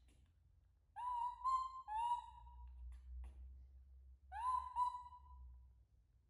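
Newborn baby monkey giving high, clear coo calls, each sliding up and then holding steady. There are three in quick succession about a second in, then two more near the end: the infant calling for its mother.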